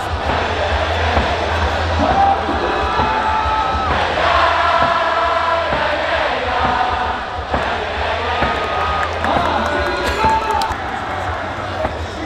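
Korean pro-baseball stadium cheer: a cheer song over the stadium loudspeakers with a steady bass beat. The away fans sing and chant along with it in unison, and there are frequent short rhythmic thuds throughout.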